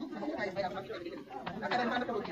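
Indistinct background chatter: several people talking at once, no words clear.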